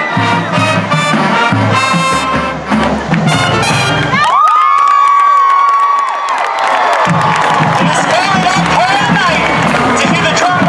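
Marching band brass and drums playing, cutting off about four seconds in. High-pitched cheering and screaming from the crowd follows, then continued shouting and cheering.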